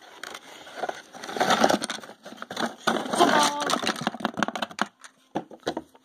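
Cardboard jigsaw puzzle pieces rattled and tipped out of their box, a dense run of small clicks and rustles that thins out about five seconds in.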